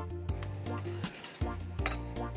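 Metal ladle stirring curry in an aluminium pan, clinking and scraping against the pan, over background music with a steady beat.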